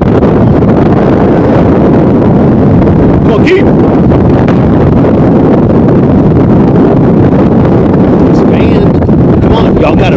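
Wind buffeting the camera microphone: a loud, steady rumbling roar, with faint voices in the distance.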